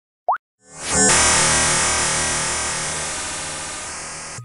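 Intro sound effects and music: a short rising "bloop" just after the start, then about a second in a loud sustained music chord swells in and slowly dies away.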